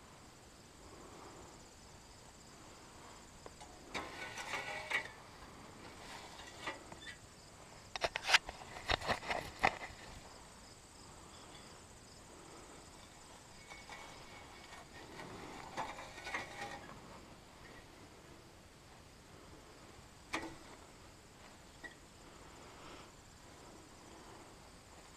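Faint steady chirring of insects in the garden, broken by bursts of rustling and sharp clicks close to the microphone, loudest about eight to ten seconds in, with a single click near the end.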